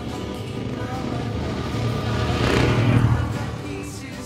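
Two off-road motorcycles riding past close by on a dirt track, their engine noise rising to a peak about three quarters of the way through and then fading, under background music.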